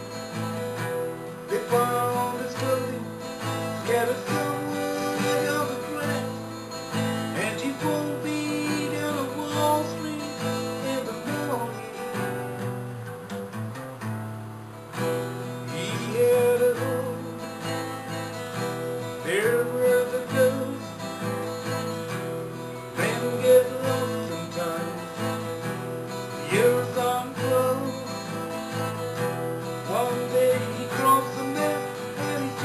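Acoustic guitar being strummed, playing chords of a song, with a short softer passage about halfway through.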